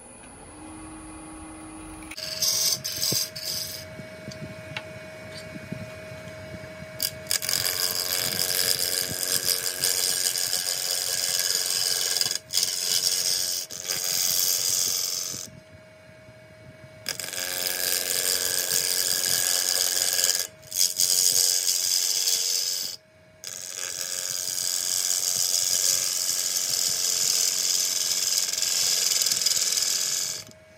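Wood lathe spinning a large ash table-leg blank while a spindle gouge cuts the shoulder from square to round, a steady hum under rough cutting noise. The lathe comes up to speed in the first second or two, the cutting starts about two seconds in, and it stops briefly several times as the tool is lifted.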